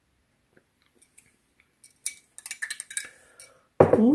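A person sipping milk from a glass: a quick run of slurping and swallowing sounds about two seconds in. Near the end there is a short, loud, rising 'mm'.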